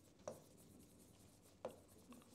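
Faint pen strokes on a writing board, near silence, with two short sharp taps of the pen on the board, about a quarter second in and near the end.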